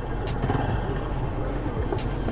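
Busy street ambience: a vehicle engine running steadily under a general outdoor hubbub, with faint voices in the background.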